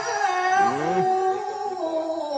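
A woman reciting the Qur'an in the melodic tilawah style, holding a long, slowly bending note through a microphone. A brief lower sliding sound runs under it about half a second in.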